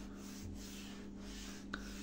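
Faint soft rubbing against a surface, in two short swishes, with a small click near the end, over a steady low hum.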